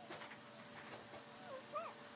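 Newborn puppies giving several short, wavering squeaks and whimpers while they nurse, the loudest squeak near the end, with soft suckling and shuffling noises between.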